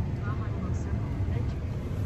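Steady low rumble inside a pickup truck's cab from its engine running, with a brief faint voice near the start.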